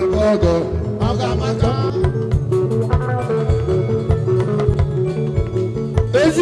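Live band music with a steady beat and bass, played loud through a sound system.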